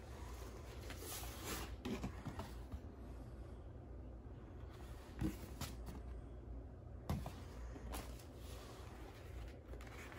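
Faint handling of a cardboard LP record jacket: soft rustles and a few light taps and clicks as it is lifted and turned over in the hands.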